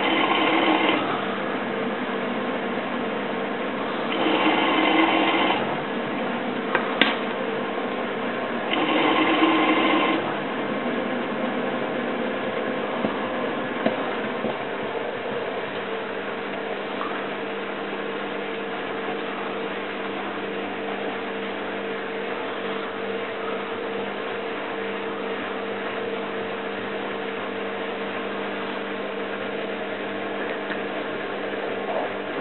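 Miele WT2670 washer dryer running with a steady motor hum as its drum turns a load of towels. There are three short, louder noisy surges in the first ten seconds, then the hum settles and holds steady.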